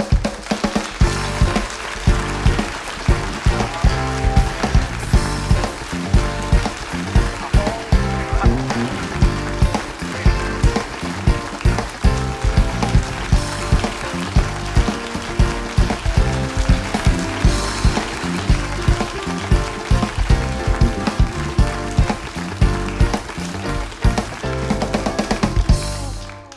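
Band music for the guests' entrance: an up-tempo number with a steady drum beat, about two beats a second.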